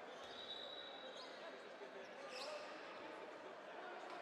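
Sports hall ambience: crowd murmur and voices, with a ball bouncing on the court floor. Two brief high squeals stand out, one held for most of the first second and ending in a rise, and a short rising one just past the middle.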